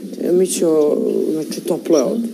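A woman talking; her words are not made out.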